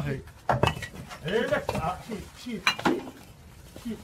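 Fired bricks being handled and set by hand at speed, giving a few sharp clinks and knocks: a pair about half a second in and another pair near three seconds. Voices are heard between them.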